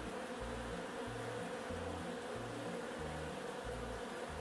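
Many honey bees buzzing as they fly around a hive entrance, a steady hum.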